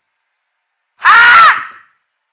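A short, loud, high-pitched scream about a second in, its pitch rising then falling, lasting about half a second.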